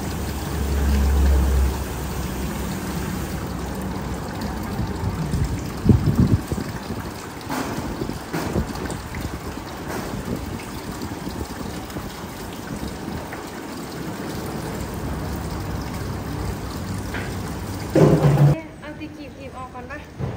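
Liquid trickling as it is squirted from a plastic squeeze bottle onto a dog's maggot-infested, infected ear to flush the wound, over the steady noise of a busy treatment room. There is a knock about six seconds in and a short, louder sound just before the end.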